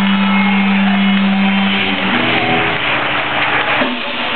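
A held low note from the band's amplified instruments rings steadily, then cuts off about halfway through, leaving the murmur of a crowd in a large hall.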